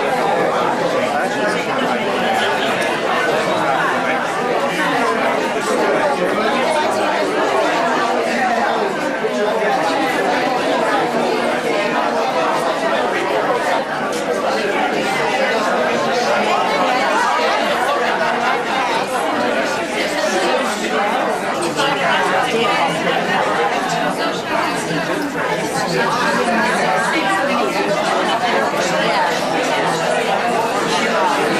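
Many people talking at once in a room: a steady hubbub of overlapping conversations, with no single voice standing out.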